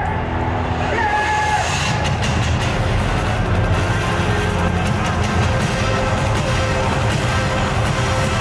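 Music, dense and steady in level throughout, with no speech over it.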